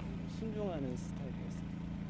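A man's voice speaking faintly in Korean, the original interview audio turned down beneath the translation, over a steady low background rumble.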